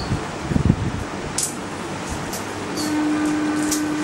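Steady fan-like noise with a few soft low knocks in the first second and brief clicks. A steady low hum joins near the end.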